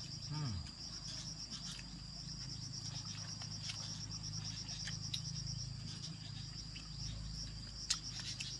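Insects chirping in a fast, steady pulsing trill, about ten pulses a second, over a faint low hum, with a few soft clicks from food being handled.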